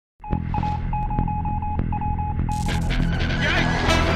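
Animated sci-fi sound effects: a low throbbing hum with a high electronic beep repeating about three times a second, joined about two and a half seconds in by a rushing noise like a rocket blast-off and a short warbling chirp.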